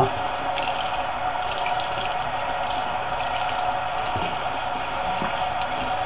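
Tap water running steadily into a sink, the hot water left on to warm up.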